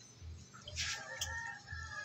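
A rooster crowing once: a drawn-out call starting a little under a second in and still sounding at the end.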